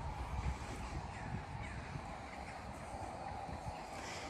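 Crows cawing faintly in the distance a few times in the middle, over a low, steady rumble.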